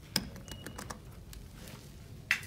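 Adams elevator hall call button being pressed: a sharp click, then several lighter clicks and a short high beep.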